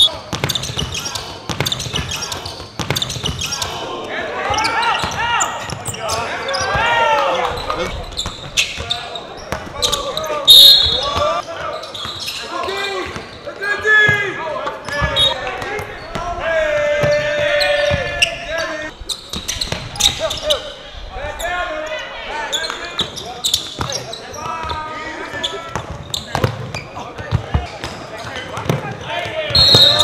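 Basketball play on a hardwood gym floor: the ball bouncing and knocking, with short high squeaks now and then, under players' voices calling and shouting through most of it.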